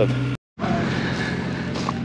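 A motor runs with a steady hum and a light hiss over it. A brief gap of silence breaks it about half a second in.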